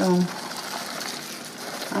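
Plastic package of pecans rustling as it is handled, a steady hiss for about a second and a half.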